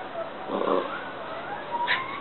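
Small wet terrier grunting while rolling and rubbing itself on a towel after a bath, with a thin whine that rises near the end.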